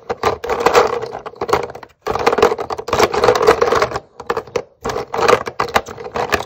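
Plastic paint sticks clattering against each other and the sides of a plastic tub as a hand rummages through them: bursts of rapid clicking, with short breaks about two and four seconds in.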